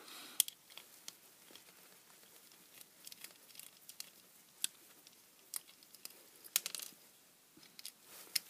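Precision screwdriver working tiny screws out of a small plastic gadget's circuit board: scattered faint scrapes and a few sharp clicks, with quiet stretches between.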